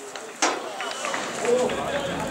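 Voices shouting across an outdoor football pitch, with one sharp knock about half a second in.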